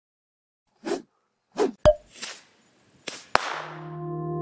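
Animated-logo intro sound effects: four short whooshes with two sharp clicks among them. The second click, about three and a half seconds in, opens into a held musical chord.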